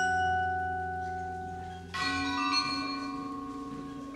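An indoor drumline's front ensemble of mallet keyboards and chimes playing slow, ringing chords. One chord rings and fades, then a new chord is struck about two seconds in and sustains, over a low held note.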